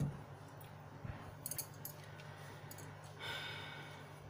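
Faint taps and clicks of hands and rings touching tarot cards on a cloth-covered table, with a soft thump at the start, over a steady low hum. A brief sigh-like vocal sound comes near the end.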